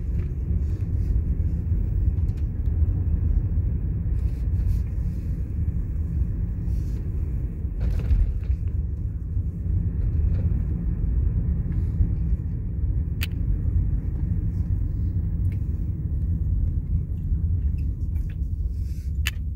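Steady low road and engine rumble inside a moving car's cabin, with a single light click about two-thirds of the way through.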